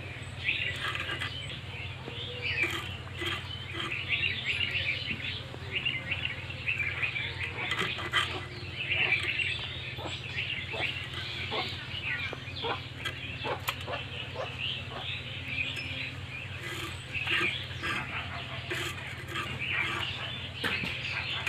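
Small birds chirping continuously and busily, with scattered light clicks and scrapes from small fish being scaled by hand against a boti blade over a steel plate, over a steady low hum.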